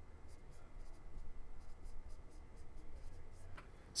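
A stylus writing on a tablet screen: faint, irregular small taps and scratches of pen strokes over a low steady hum.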